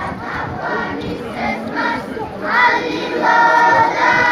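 A crowd of marchers singing together in chorus, many voices at once; about two and a half seconds in the singing becomes louder and more in unison on held notes.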